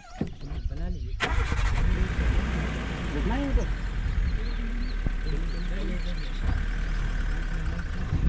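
Open-top safari jeep's engine starting about a second in, then running steadily as the jeep moves off along a dirt track.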